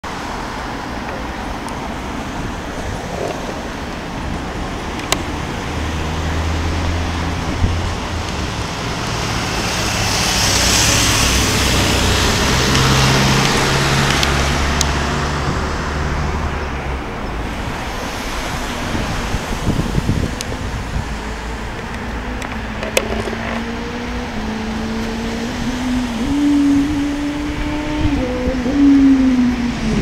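City road traffic: a steady wash of engine and tyre noise that swells as vehicles pass about ten seconds in. Over the last several seconds one engine's note climbs slowly as it pulls away.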